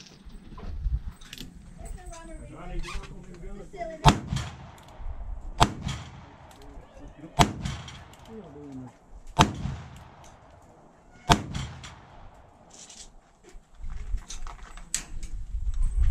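A revolver fired five times, a shot about every two seconds.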